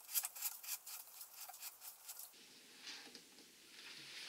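Faint scratchy clicking of a threaded fitting being screwed by hand onto a reflector telescope's focuser, many small ticks for about two seconds, then a softer rustle as the hands let go.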